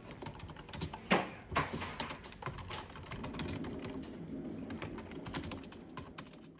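Typing on a computer keyboard: quick, uneven key clicks, with one louder knock about a second in.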